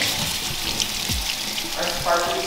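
Water running steadily from a pull-down kitchen faucet into a stainless steel sink.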